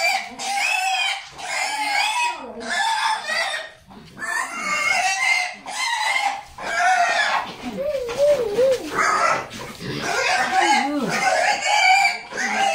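A farm animal squealing loudly over and over, in high-pitched cries of about a second each with short gaps between them.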